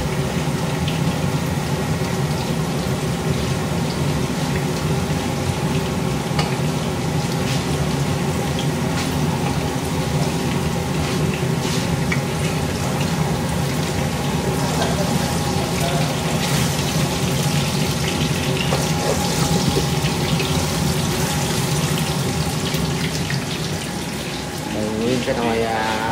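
A wooden spatula stirs and scrapes chicken in a metal pot, over a steady rushing noise with a low hum.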